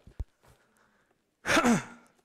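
A man's loud, breathy sigh about one and a half seconds in, its pitch falling as it trails off. A short, faint knock comes just before it, near the start.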